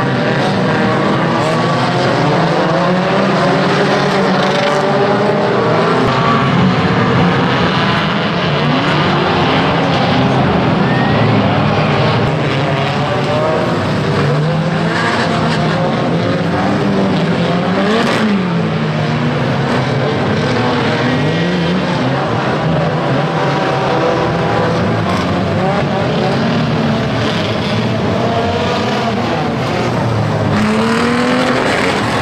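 Many big-car banger racers' engines revving at once, their pitches rising and falling over each other, with a sharp bang a little past halfway.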